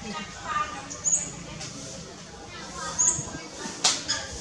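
Macaques giving short, high squeaking calls every second or so, with a single sharp click near the end.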